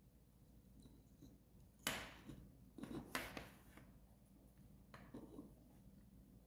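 Soldering work on a small circuit board: three short scraping handling noises, about two, three and five seconds in, against near silence.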